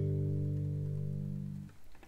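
A G major chord on a nylon-string classical guitar ringing and slowly fading, then stopped short about one and a half seconds in.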